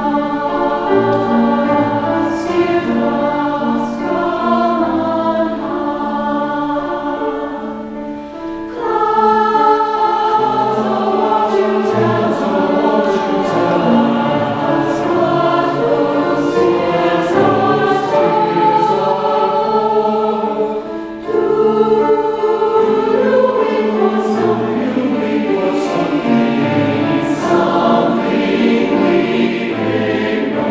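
Mixed choir of women's and men's voices singing together in harmony, with short dips in loudness about eight and twenty-one seconds in, each followed by a fuller entry.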